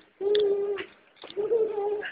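A toddler's voice: two drawn-out, wordless, level-pitched cries of about half a second each, one just after the start and one in the second half.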